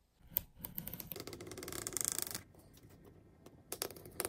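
A metal ruler scratching along the fold lines of a card piece, scoring it for folding: a rasping scrape of about two seconds, a short lull, then a second scrape starting near the end.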